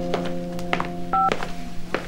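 A single short two-tone keypad beep from a mobile phone about a second in, with a few soft clicks of the phone being handled, over a steady held chord of background music.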